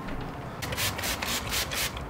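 Towel rubbing over an alloy wheel in about six quick wiping strokes, roughly four a second, starting just over half a second in.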